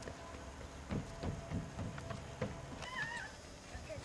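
English bulldog puppies giving a run of short, low grunts while playing, followed about three seconds in by a brief high, wavering whine.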